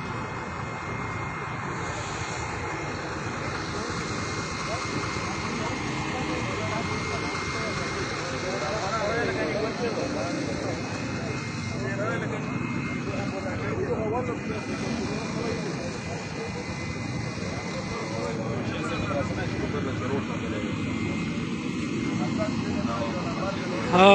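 A steady engine drone with a faint whine, running without change, under indistinct voices of people talking.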